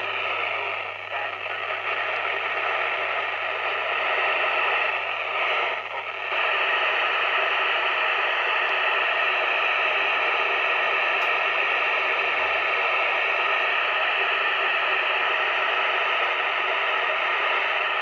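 FM receiver hiss from a Yupiteru multi-band scanner tuned to the ISS downlink on 145.800 MHz. No voice is left on the channel, only the receiver's static. It dips briefly about six seconds in and then holds steady and loud.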